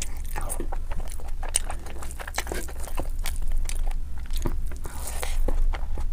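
Close-miked eating sounds: a person chewing big hand-fed mouthfuls of rice, with wet mouth sounds and many irregular sharp clicks.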